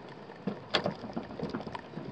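A few soft clicks and scuffs at irregular intervals over a steady faint hiss, typical of handling noise while the camera moves over asphalt roof shingles.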